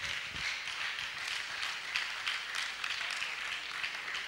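Congregation applauding: many hands clapping steadily.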